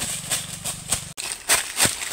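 Running footsteps crunching through dry fallen leaves, about three steps a second.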